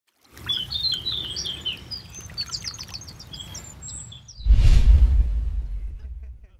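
Songbirds chirping and trilling over a low rumble. About four and a half seconds in, a sudden loud, deep whoosh-boom, a logo sound effect, cuts in over the birds and fades away over the next two seconds.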